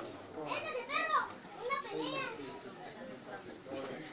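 People talking at once, with high-pitched voices, likely children's, calling out from about half a second to two and a half seconds in over a murmur of adult chatter.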